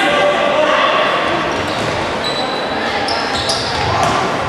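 Indoor football being played in a sports hall: the ball kicked and bouncing on the hall floor, with players' shouts echoing in the large room. A few short high squeaks come in the second half.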